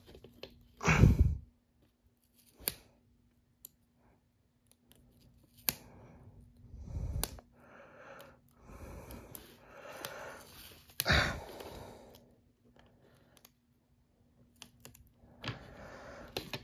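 Handling noise from a sticker being peeled and pressed onto a clear plastic toy track piece: light clicks and taps of plastic and soft rubbing and rustling. Two short breathy puffs stand out, about a second in and about eleven seconds in.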